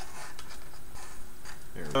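Light handling noise of hookup wire being pushed and tucked under a circuit board, with a few faint small clicks and rustles.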